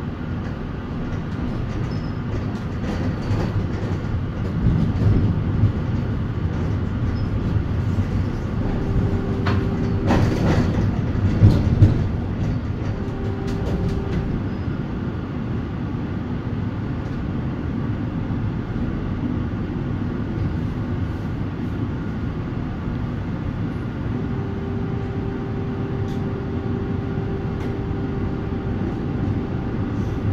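Interior running noise of a 1987 thyristor-controlled Valmet-Strömberg MLNRV2 tram: a steady rumble of wheels on rails, with a brief louder clatter about ten to twelve seconds in. A steady whine comes in briefly around nine and thirteen seconds, then again from about twenty-four seconds on.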